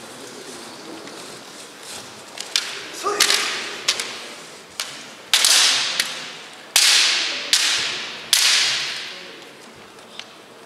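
Kendo bout: sharp clacks of bamboo shinai striking and a few footfalls, then three loud drawn-out kiai shouts about five, six and a half, and eight seconds in, each starting suddenly and fading over about a second in the echoing hall.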